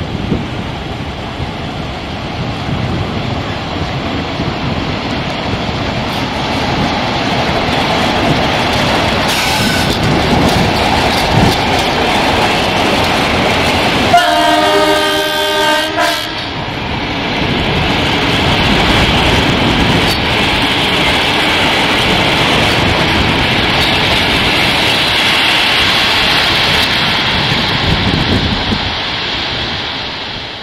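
CFR class 60 diesel-electric locomotive running under power as it moves passenger coaches, its engine and the rolling wheels heard over the rails. About halfway through, a train horn sounds for about two seconds with several tones at once.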